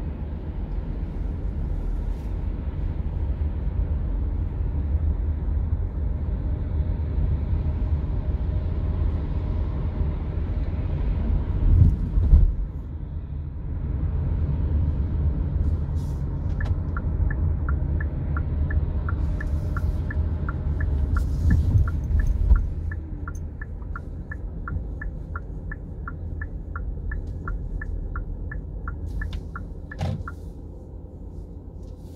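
Steady low road and engine rumble heard inside a car in slow traffic, swelling twice with a heavier low rumble. About halfway through, a turn-signal indicator starts ticking at about two clicks a second and keeps going.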